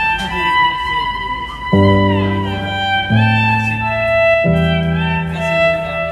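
Violin playing a slow melody of long held notes with sliding changes of pitch, over a low backing of sustained chords that change every second and a half or so.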